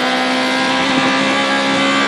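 Rally-prepared rear-wheel-drive Toyota Corolla's engine held flat out at high revs in fourth gear, heard from inside the cabin, running steadily.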